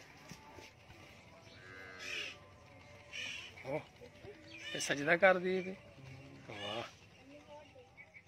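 People talking and laughing in short bursts, the loudest burst of laughter about five seconds in.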